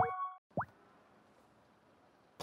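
Video-call app sound effects: a held synthesized chime stops within the first half second, and a short rising 'bloop' sounds about half a second in as the call connects.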